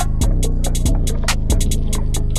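Trap beat instrumental: a deep bass line whose notes slide in pitch as they start, under quick hi-hat ticks about six to eight times a second.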